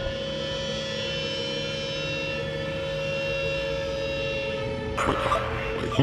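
Music: a held, steady drone of several layered tones lasting about five seconds, which gives way to a busier, choppier mix near the end.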